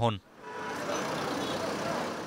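Road traffic noise from buses and trucks: a steady rush that swells about half a second in, holds, and fades near the end.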